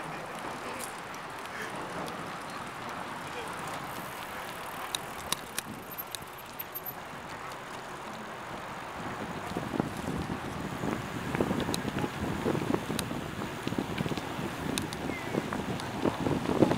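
Bicycle ride heard from the moving bike: tyres rolling on pavement and wind on the microphone, with occasional sharp clicks and rattles. From about nine seconds in, the rolling noise grows louder and rougher.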